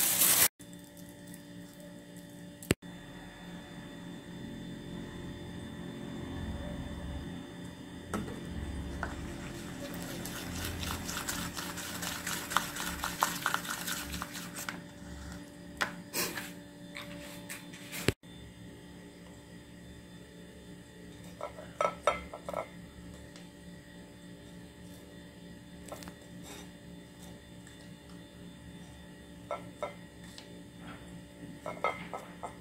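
Metal spoon stirring thick powdered-sugar icing in a small ceramic bowl: rapid scraping and clinking against the bowl, busiest in the middle, with a few louder taps of the spoon on the rim later on.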